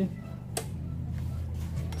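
Repaired AB2000 car amplifier switched on and playing its input faintly and low: a steady low hum, with a single click about half a second in.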